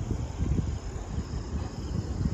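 Gusty wind rumbling on the microphone, with a faint steady high trill of insects behind it.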